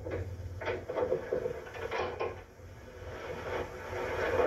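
A few short knocks and light clatters, like wood and crockery being handled, over a steady low hum.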